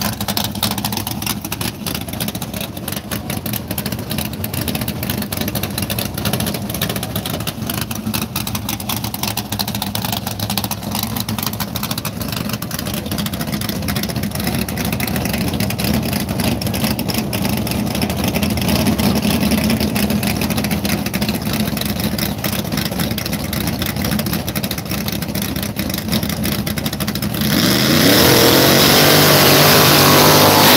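Drag-race Chevrolet Nova's engine running steadily with a rapid pulsing rumble at the starting line. Near the end it suddenly revs hard, rising in pitch and much louder, as the rear tyres spin in a smoking burnout.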